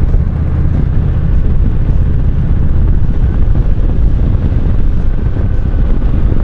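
Kawasaki Vulcan cruiser motorcycle running steadily at road speed, its engine rumble mixed with heavy wind buffeting on the handlebar-mounted camera's microphone.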